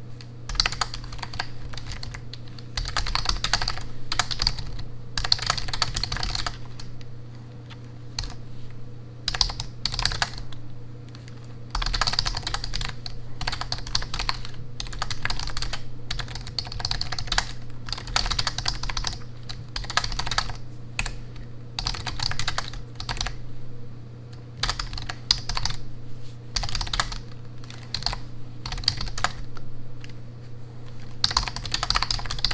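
Fast touch-typing on a low-profile backlit computer keyboard: dense runs of key clicks in bursts of a few seconds, broken by short pauses.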